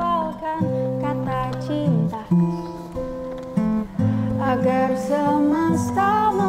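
Acoustic guitar strummed in sustained chords that change about once a second, with a voice singing a slow melody over them.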